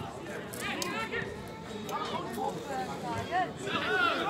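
Voices calling out across an open football pitch, several short shouts rising and falling in pitch, over steady outdoor background noise.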